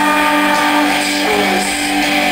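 Rock band playing live in an arena, heard from the crowd: an instrumental stretch of sustained electric guitar chords over the band, with no singing.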